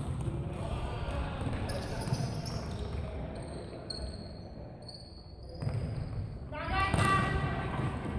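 Futsal ball being kicked and bouncing on a hardwood sports-hall floor, with players' footsteps and calls echoing in the big hall; a player's shout is the loudest moment, about seven seconds in.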